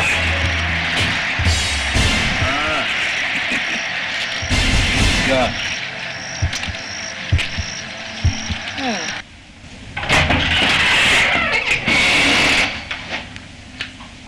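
Film soundtrack: background music mixed with indistinct voices over noisy audio, with a sudden drop in level about nine seconds in.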